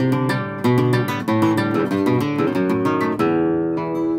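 Classical-style acoustic guitar playing an instrumental passage of a milonga: plucked bass notes and chords with occasional strums, no voice.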